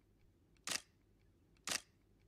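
Camera shutter clicking twice, about a second apart, each a short sharp click.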